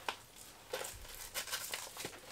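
Faint rustling of a fabric frame bag and its hook-and-loop straps being handled and fastened, with a few light clicks.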